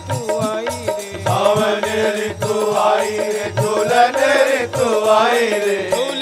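A Hindi devotional bhajan performed live: a male voice sings over regular drum strokes and a steady drone, the singing coming in strongly about a second in.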